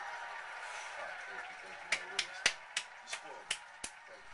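A quick, uneven run of about eight sharp hand claps in the second half, after a faint voice.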